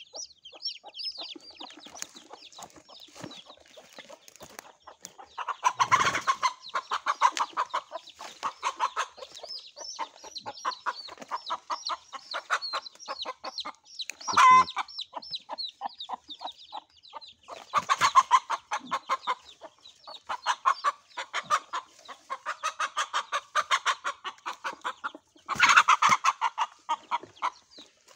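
Chicks cheeping high and thin, over a broody mother hen clucking in fast runs that swell loud several times, with one sharp squawk about halfway through, as her chicks are being caught.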